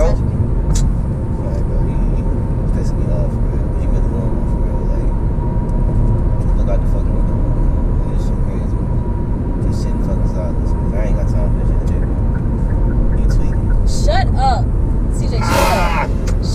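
Steady road and engine rumble inside the cabin of a moving car, with a faint steady tone over it. Near the end a short burst of voice and laughter cuts in.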